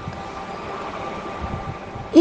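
Steady background hiss with a faint high hum, and a brief low rumble about a second and a half in.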